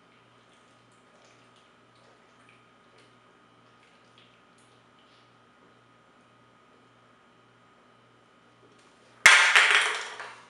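A person chugging a can of beer: faint gulps over a quiet room, then near the end a sudden loud burst of noise that fades within about a second as the chug finishes.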